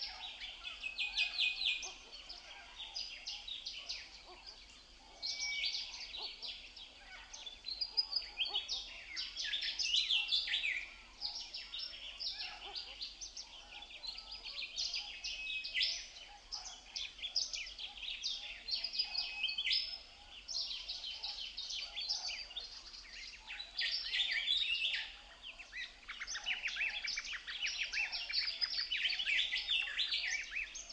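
Many songbirds chirping and trilling at once, their short high calls overlapping and coming and going in waves.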